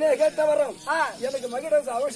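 A stage actor's raised voice delivering drama dialogue, with drawn-out, held pitches between short breaks.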